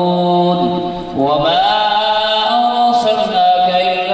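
A man singing a naat into a microphone over the PA, holding long, slowly gliding notes. About a second in the voice drops away briefly, then comes back on a rising line.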